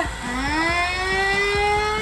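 The small electric motor of a Little Tikes STEM Jr Tornado Tower toy blender spins up with its button pressed, driving the water into a whirlpool. It whirs with a pitch that rises steadily as it gathers speed.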